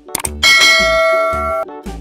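A bell-chime sound effect, struck about half a second in and ringing for about a second before cutting off, preceded by a quick click, over children's background music with a regular beat.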